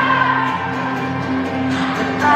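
Live solo acoustic set: a woman singing and accompanying herself on an acoustic guitar, amplified through a stadium sound system and heard from far up in the stands.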